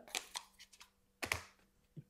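A few light clicks and taps as a smartphone and its cardboard retail box are handled, then one louder knock a little over a second in.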